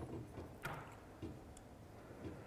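Quiet room tone in a hall with two faint clicks, the first a little over half a second in and the second about half a second later.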